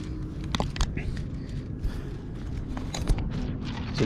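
Handling of a paper-and-bamboo kite: a few light clicks and rustles, the clearest about half a second and a second in and another near three seconds, over steady low background noise.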